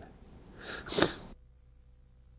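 A man's brief breathy laugh, a sharp exhale about a second in, then the sound drops to near silence.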